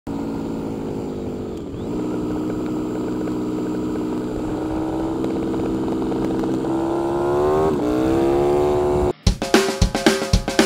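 Harley-Davidson Sportster's air-cooled V-twin engine running at road speed, its note dipping sharply twice and climbing after the second dip. It cuts off suddenly about nine seconds in, and a drum-kit beat starts.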